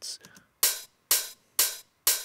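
Rough open hi-hat sample from a house track, played alone, three hits about half a second apart, each fading out quickly. The hat's lowest frequencies are cut and much of its mids are left in, so it sounds big and solid.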